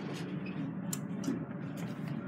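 Steady low hum inside an elevator cab, with a few faint clicks spread through it, while the doors stay open and do not close.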